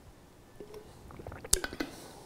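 A man drinking juice from a glass bottle, with quiet swallowing, then a sharp click and a few smaller clicks about one and a half seconds in as he lowers the bottle and tastes.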